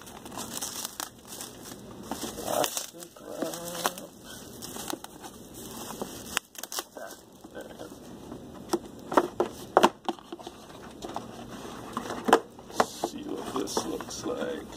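Clear plastic shrink wrap crinkling as it is peeled off a cardboard board game box. Later come several sharp knocks and taps as the box is handled and its lid lifted off.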